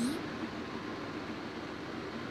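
Steady, even background hiss with no distinct events.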